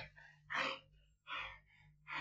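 A wounded, dying man gasping for breath: two short, breathy gasps about a second apart.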